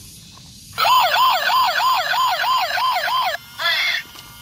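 Toy police car's electronic siren, starting about a second in as its slide switch is turned on. It is a loud, fast rising-and-falling wail, about three cycles a second, that breaks off briefly near the end and starts again.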